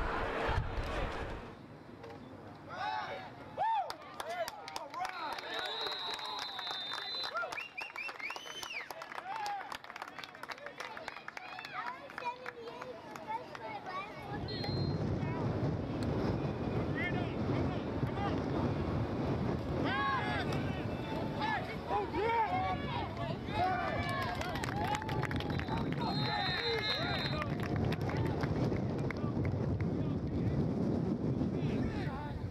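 Spectators and players shouting and calling out across a football field, with a referee's trilled whistle blast about five seconds in and another near the end. From about halfway, wind buffets the microphone under the voices.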